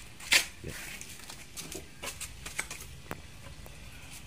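Handling noises: one sharp knock about a third of a second in, then scattered light clicks and rustles.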